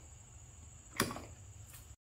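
A single sharp knock about a second in, with a fainter one a little later, over low room hum: handling of the plastic dowel jig as its fence is tightened down against the board.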